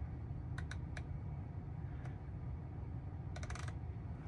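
Faint, quick clicks from in-car controls being pressed: three in the first second and a short run of them near the end, over a steady low hum.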